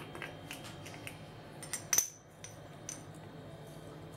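Light clicks and clinks of a small metal spoon against spice jars and a stainless steel bowl while spices are measured out, the sharpest clink about two seconds in.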